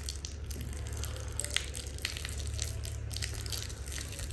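Thin stream of water from a hand-held garden hose spattering onto a dusty ribbed surface, with scattered small crackles over a steady low hum.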